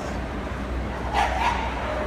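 A dog barking twice in quick succession, two short sharp barks a little past a second in, over the steady hum of a busy show hall.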